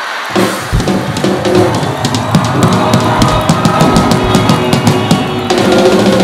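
Live band's drum kit playing a busy fill of bass drum, snare and cymbal hits, a stage sting after a punchline, starting about a third of a second in and carrying on loudly.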